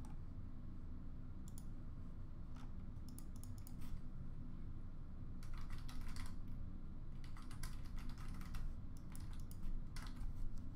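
Typing on a computer keyboard in irregular bursts of quick clicks, over a low steady room hum.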